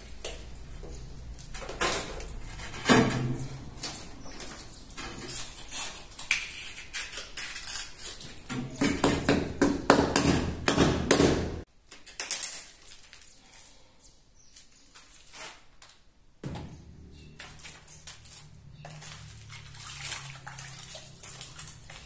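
Hand work on a freshly set porcelain wall tile: repeated clinks, knocks and scraping of tools, tile and shim pieces against the tile and wall, busiest and loudest a little before the middle. It cuts off suddenly, then fainter knocks resume after a few seconds.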